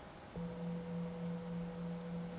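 A Tibetan singing bowl struck once about a third of a second in, then ringing on as a steady low hum with a fainter higher tone above it, its level gently wavering. The bowl marks the close of a short silent meditation session.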